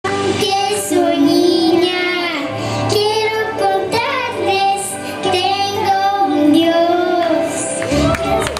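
A young girl singing into a handheld microphone, amplified, in long sung phrases with wavering pitch.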